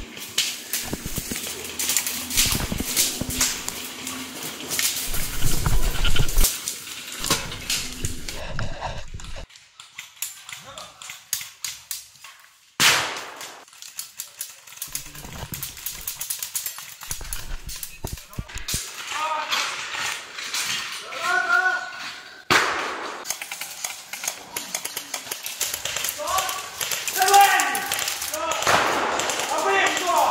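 Small-arms gunfire in a training firefight: about nine seconds of rapid shots, then single shots about thirteen and twenty-two seconds in, with voices calling out between them.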